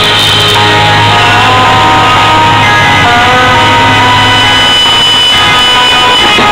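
A live rock band playing loudly, with electric guitars and a drum kit.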